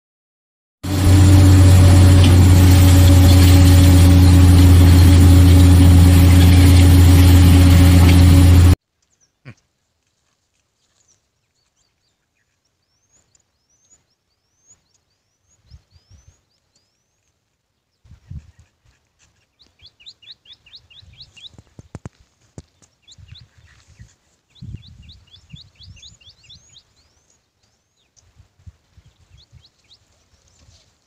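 A loud, steady low electronic drone with hiss, the title card's intro sound effect, runs for about eight seconds and cuts off suddenly. Then it is quiet outdoors, with small birds chirping in quick repeated notes and a few faint knocks.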